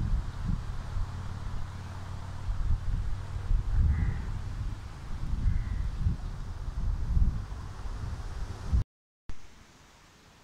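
Outdoor ambience dominated by a steady low rumble, with two short, faint bird calls about four and five and a half seconds in. The sound cuts out briefly near the end and is quieter after.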